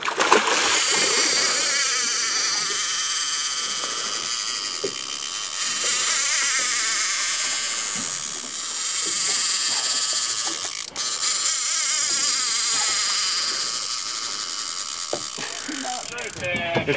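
Fishing reel drag screaming as a hooked halibut runs and strips line off the reel: a sustained high-pitched whine that wavers in strength, with a brief break about eleven seconds in.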